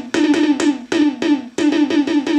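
Analog drum synth (a clone of the Coron DS-8) sounding a fast run of short pitched electronic drum hits, about four a second, each with a sharp attack and a slight falling pitch.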